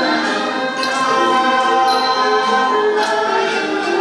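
Thai classical mahori ensemble playing: two-string fiddles (saw duang and saw u), khlui bamboo flute, jakhe zither, khim dulcimer and ranat xylophone, with a bright metallic stroke about once a second keeping time.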